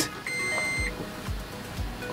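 A single electronic beep, one steady high tone lasting a little over half a second, over background music with soft low thumps.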